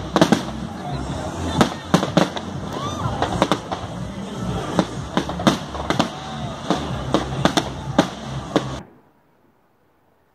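Aerial fireworks going off in a rapid run of sharp bangs and crackles over a steady low rumble, stopping abruptly near the end.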